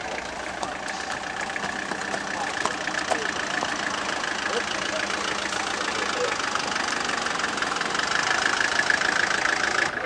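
Motor scooter's small engine running, getting louder over the last few seconds as it approaches, with people talking in the background; the sound cuts off suddenly at the end.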